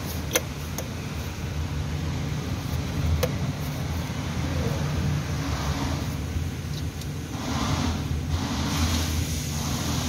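A steady low engine-like drone from machinery running in the background, with a couple of sharp metallic clicks of tools on the engine's turbo fittings.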